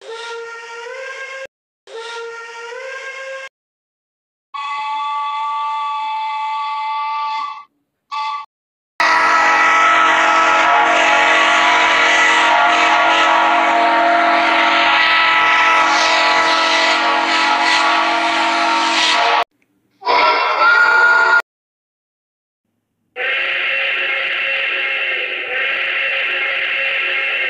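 A series of steam locomotive whistle blasts, each a chord of several tones, split by short silences. The first two bend upward in pitch partway through, one long blast lasts about ten seconds, and a shorter rising one and a steady one follow near the end.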